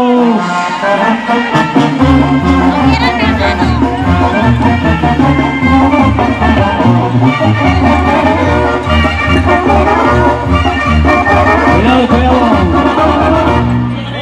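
Loud Mexican-style brass band music, with a bouncing bass line of changing notes under the horns.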